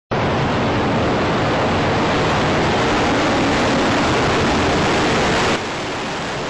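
Loud, dense roaring rumble of a World Trade Center tower collapsing. It stops abruptly at a cut about five and a half seconds in, leaving a quieter steady rush.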